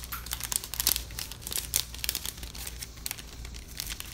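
A clear plastic bag crinkling as it is handled, a dense run of short, sharp crackles.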